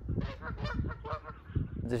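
Faint honking of geese.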